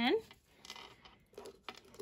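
Faint rustling of hands handling a small loom-knitted yarn ball, with a light click near the end.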